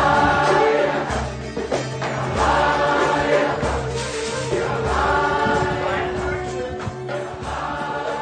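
A group of voices singing a repeated chant together over a low, pulsing accompaniment.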